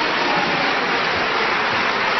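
Audience applause: a dense, even wash of clapping from a large crowd.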